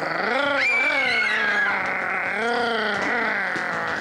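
A voice imitating a wolf, making drawn-out growls and howls that slide slowly up and down in pitch.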